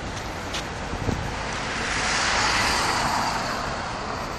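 A car passing on the street, its tyre and engine noise swelling to a peak about halfway through and then fading, over a steady background of town traffic. A short knock comes about a second in.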